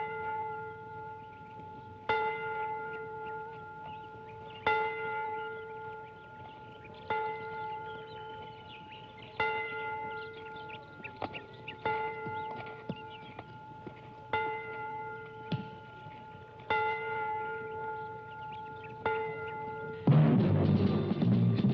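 A single church bell tolling slowly, one stroke about every two and a half seconds, eight strokes in all. Each stroke rings on and fades before the next.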